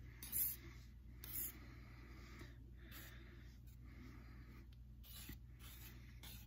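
A metal palette knife scraping and stirring dry cobalt blue pigment powder into a small amount of liquid watercolor binder on a tempered glass sheet. The strokes are short and scratchy: two louder ones in the first second and a half, then fainter, irregular strokes.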